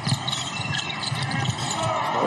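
Basketball arena ambience during live play: steady crowd hubbub with a couple of dull thumps from the court.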